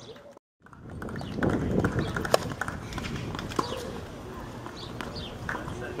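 Several sharp, irregularly spaced knocks of a tennis ball on a hard court over steady outdoor court ambience, after a brief dropout near the start.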